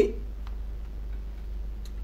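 A short pause in speech filled by a steady low background hum, with a couple of faint, isolated ticks.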